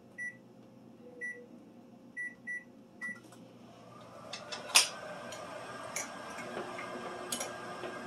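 Microwave oven keypad beeping five times as a cooking time is keyed in. The oven then starts and runs with a steady hum, with a few sharp clicks during the run.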